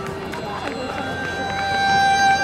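Live Indian classical accompaniment to an Odissi dance in a sparse passage: a held note stops at the start, a few light taps follow, and a violin begins a long steady note about a second in.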